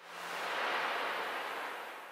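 A rushing whoosh of noise, like a wave breaking, that swells up over the first half second and fades away over about two seconds.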